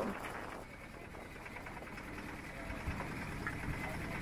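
Low, steady rumble of wind buffeting the microphone and choppy water rushing along the hull of a small sailboat under way.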